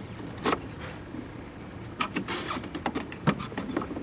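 Swivelling chrome ball vents of a Pontiac Cool-Pack air conditioning unit turned by hand: scattered clicks and scrapes, one sharp click about half a second in and a cluster of them from about two seconds.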